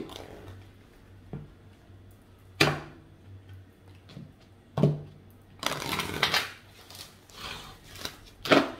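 A Gaia Oracle card deck being shuffled by hand: two sharp snaps of the cards about two and a half and five seconds in, then a longer patch of rustling and flicking cards a little later.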